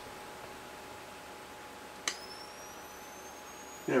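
Nikon SB-800 speedlight firing with a sharp click about two seconds in, followed by the high whine of its flash capacitor recharging, rising slowly in pitch.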